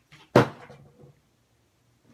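A single sharp knock about a third of a second in, with a brief ringing decay and a couple of faint smaller knocks around it.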